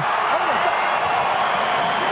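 Steady din of a large arena crowd of boxing spectators.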